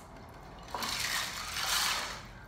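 Water splashing and running off a metal muffin tin as it is lifted out of a plastic tub of water, starting a little under a second in.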